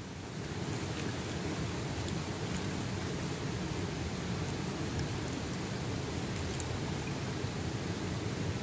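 Water sloshing as a plastic gold pan of river gravel is shaken and washed just under the surface of a shallow river, over the steady sound of running water, with a few faint clicks scattered through.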